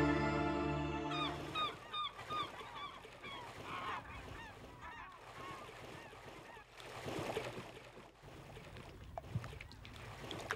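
Music fades out about a second in, giving way to a run of short, repeated chirping animal calls, two or three a second. A rush of splashing water comes about seven seconds in.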